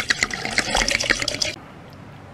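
Liquor poured from a glass bottle into a glass, glugging in quick uneven pulses that stop abruptly about three-quarters of the way through.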